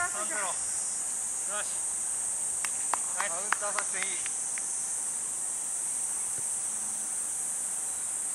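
Steady high-pitched shrill of summer cicadas filling the air. Distant shouts and a few sharp knocks come through around the middle.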